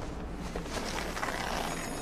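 Steady rushing airflow noise with a deep rumble from a large wind tunnel running during a parachute deployment test, as the test parachute streams out into the airstream.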